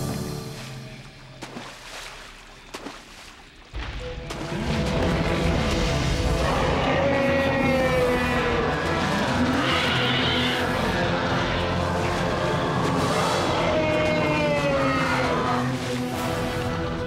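Animated sharptooth (cartoon Tyrannosaurus) roaring over dramatic background music. The roar comes in loud about four seconds in, after a quieter stretch of music, and carries on with rising and falling pitch.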